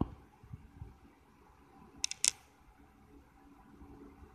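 Quiet room tone with two short, sharp clicks about two seconds in, a quarter of a second apart.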